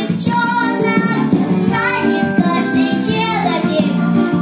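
A young girl singing a Russian-language pop song over an instrumental backing track with a steady beat, her held notes wavering with vibrato.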